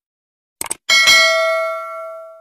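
Subscribe-button sound effects: a quick double click, then a bright bell ding about a second in that rings on and slowly fades.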